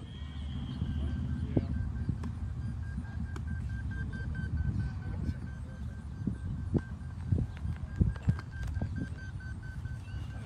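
Beep baseball ball beeping: a steady run of short, evenly spaced, high-pitched beeps that starts about a second in. It is the audible signal a blind batter swings at during the pitch.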